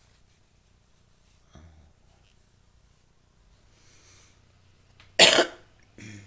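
A person coughing once, short and loud, about five seconds in.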